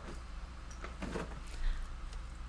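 Soft rustling and handling noises as a project bag is picked up from the floor, a couple of brief scuffs about a second in and again near the end, over a low steady hum.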